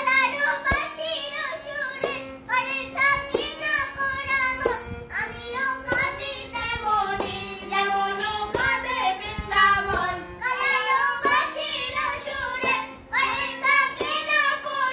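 A woman and a young girl singing a Bengali Krishna bhajan together, with harmonium chords held underneath. A sharp percussive stroke falls about every second and a half, keeping the beat.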